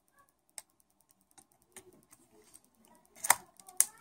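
Small plastic clicks and taps from a plastic pry tool and parts inside an open laptop, with two sharp clicks about half a second apart near the end.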